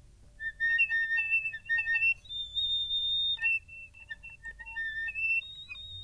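Piccolo whistle tones: thin high notes that waver and hop from pitch to pitch, with one longer held note near the middle. They are played as an example of a squeezed embouchure, which makes the whistle tone way harder to control.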